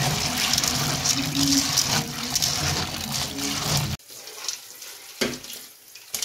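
Tap water running into an aluminium pan of dried white maize kernels as a hand stirs and rinses them, steady until it cuts off suddenly about four seconds in. A few faint knocks follow.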